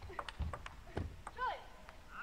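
Table tennis rally from the match audio: the celluloid ball clicking off bats and table, several light clicks a second at an uneven spacing, with a short falling squeak about a second and a half in.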